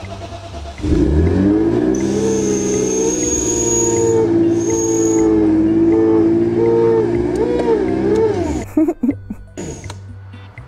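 BMW E39 5 Series car engine starting about a second in and running steadily, then stopping about eight and a half seconds in.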